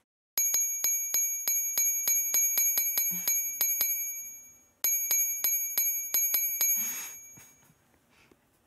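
Bell-like ding sound effect struck once for each counted handshake shake, repeating rapidly at about four a second with a short break in the middle. A brief rush of noise comes near the end.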